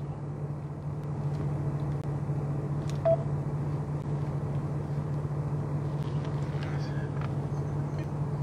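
Steady low hum inside a car's cabin, with a faint click and one short beep about three seconds in.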